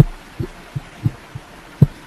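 About six short, dull, low thumps at uneven intervals over a faint steady hiss. The first and the one near the end are the loudest.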